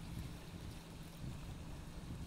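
Wind buffeting the microphone in a steady low rumble, over the wash of small waves on a rocky shore.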